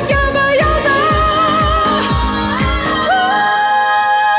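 A woman singing a pop song with a steady deep kick-drum beat, about two beats a second. Near the end the drums drop out and she leaps up to a long high note with vibrato.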